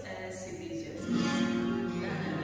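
Flamenco guitar music, an acoustic guitar plucked and strummed, with a louder chord coming in about a second in.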